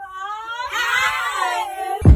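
A girl's high voice singing long, wavering notes that slide up and down, without clear words, a wail-like melisma.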